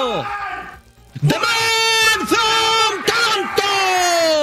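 An online video slot's big-win celebration jingle plays while the win tally climbs through the super-win and epic-win tiers. It has long tones that slide down in pitch, about three seconds in, with a busier run of effects and a few sharp hits in between.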